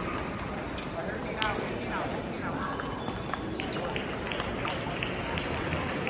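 Table tennis balls clicking sharply and irregularly off bats and tables, from a rally and from the many neighbouring tables, over the steady chatter of a busy hall.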